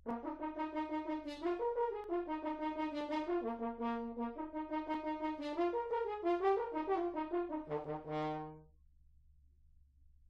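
Natural horn playing a short unaccompanied melodic passage in quick notes, closing on a held note that fades out a little before the end.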